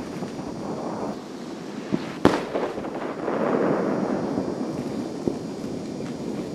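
Fireworks going off: a sharp bang about two seconds in, the loudest, with a few smaller bangs around it, and a rolling noise that swells and fades over the following couple of seconds.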